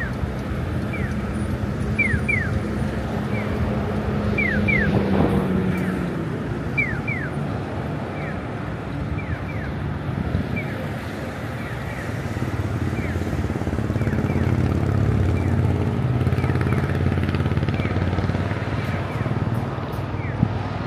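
Japanese audible pedestrian crossing signal chirping in repeated pairs of short falling cheeps, over the steady rumble of passing road traffic, which swells twice as vehicles go by.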